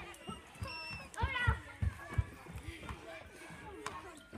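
Voices of people talking, with a few scattered low thumps.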